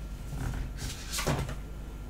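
A deck of tarot cards being handled and shuffled in the hands: three short rustling snaps of the cards in the first second and a half.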